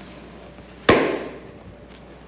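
A single sharp knock about a second in, fading over about half a second.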